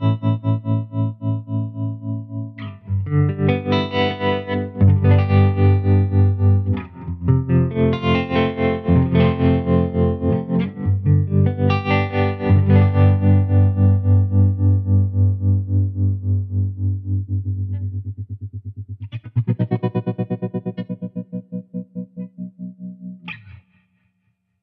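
Electric guitar chords played through a Bad Cat Black Cat tube amp with its analog tremolo switched on, the volume pulsing at an even rhythm as each strummed chord rings out. Near the end the pulsing quickens, then the last chord fades away.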